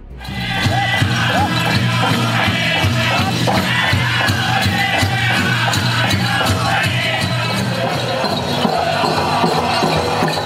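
Powwow drum group playing and singing a song, with drumbeats under gliding, high-pitched group vocals and crowd noise around it.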